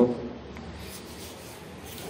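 Faint steady background hiss of room tone, with no distinct strokes or clicks, after the last syllable of a spoken word at the very start.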